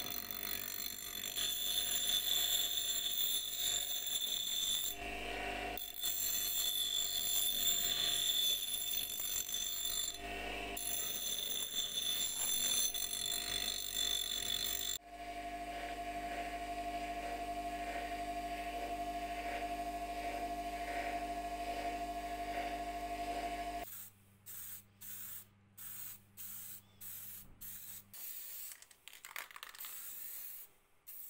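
Bench grinder running with a rough cast metal disc pressed against its abrasive wheel, grinding off rust and old paint with a loud whining grind. After about halfway it runs on with no work against the wheel, in a lighter steady whine. Near the end come several short spurts, typical of spray paint going onto the part.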